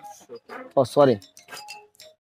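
Short, quick syllables of a man's voice, falling in pitch about a second in, among a few faint clicks and brief chime-like tones.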